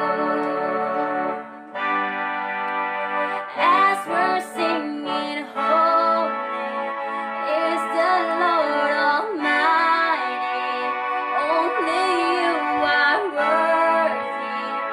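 Yamaha PSR electronic keyboard playing sustained chords, with a brief dip about a second and a half in. A female voice sings a slow melody over it from about three seconds in.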